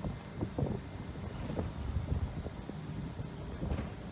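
Wind buffeting the microphone on a ship's open deck at sea: an uneven, gusting low rumble.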